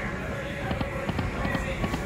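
Lock It Link Hold On To Your Hat video slot machine spinning its reels, a run of quick clicks as the reels turn and stop, over casino background noise.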